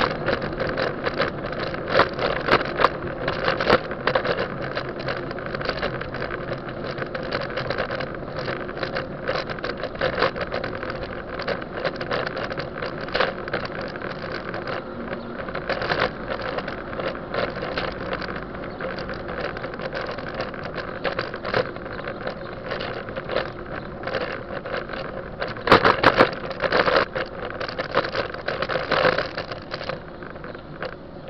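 Rattling and road vibration picked up by a camera mounted on a moving bicycle, with a dense run of irregular knocks and clicks from the road surface and wind over the microphone. A cluster of harder jolts comes about three-quarters of the way through.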